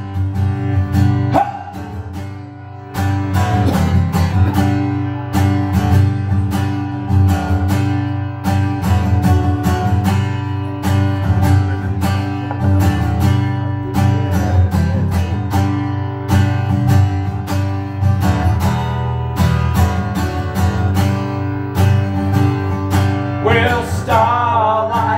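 Acoustic guitar strummed in a steady rhythm, an instrumental break in a live country song with no singing; the strumming drops back briefly about two seconds in, then picks up again.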